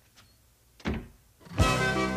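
A wardrobe's doors shut with a single thunk a little under a second in. About half a second later, instrumental music comes in, with sustained chords and heavy low drum hits about once a second.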